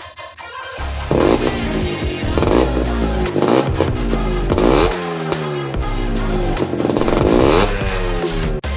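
Yamaha RX135's two-stroke single-cylinder engine revved in repeated blips, its pitch rising and then falling back after each one, about once a second.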